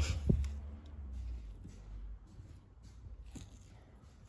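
Quiet handling of a cast-alloy ignition switch and steering lock housing: one sharp click just after the start, then a few faint clicks and knocks as the part is turned over in the hand. A low rumble fades away over the first second or so.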